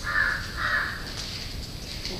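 A crow cawing twice, about half a second apart, in the first second.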